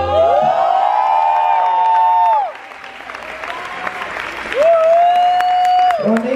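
A live band's song ending: the bass drops out and the final notes glide up and hold, then cut off about two and a half seconds in. Theatre audience applause and cheering follow, with another long note sliding up and held over it near the end.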